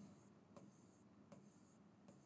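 Near silence, with faint strokes of a stylus writing on an interactive display and two small ticks, about half a second and a second and a half in.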